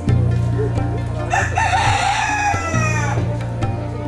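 A rooster crowing once, a call of about two seconds that falls away at the end, over background music.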